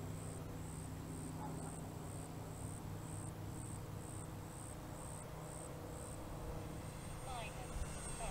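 Distant electric RC warbird's motor and propeller humming steadily at half throttle, fading near the end. Over it an insect chirps in high, even pulses about two and a half a second, which stop about six seconds in.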